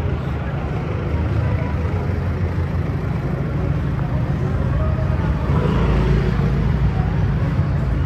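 Slow-moving street traffic close by: cars, a pickup taxi and motor scooters running at low speed, a steady low engine rumble that swells about six seconds in. Faint voices underneath.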